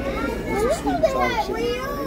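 People talking at a table, with a high-pitched voice rising and falling in pitch, over a steady low room hum.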